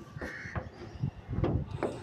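A crow cawing once, a short harsh call early on, followed by a few light knocks about a second in.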